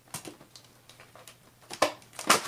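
A cardboard diamond-painting kit box being handled by hand: a few small clicks and taps, then a sharper double clack near the end as the box is picked up.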